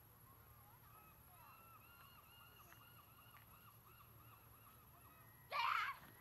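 A bird calling faintly in a fast run of short rising-and-falling notes, followed near the end by one short, loud call.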